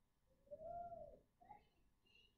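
Near silence, broken by one faint, distant voice-like call about half a second in, a single note that rises and then falls, followed by a short faint squeak.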